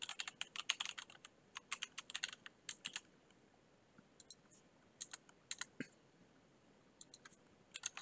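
Computer keyboard typing: faint, quick runs of key clicks for the first three seconds, then scattered keystrokes in the second half.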